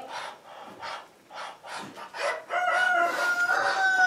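Rooster crowing once, a long held call in the second half, after a few soft rustles in the straw.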